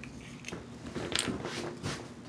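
Handling noises: a few short clicks and crackles, the two loudest in the second half.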